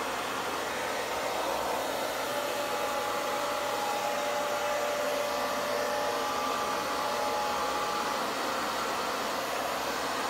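Hand-held hair dryer running steadily, blowing air across wet acrylic pour paint on a canvas; a faint motor whine comes and goes through the middle of the steady rush of air.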